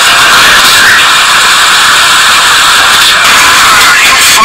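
Loud, steady hiss-like noise with no clear pitch or rhythm, like static.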